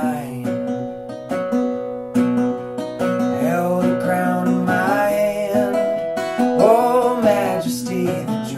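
Acoustic guitar playing picked notes, with a man's sung vocal line coming in over it in two phrases, about three seconds in and again near the end.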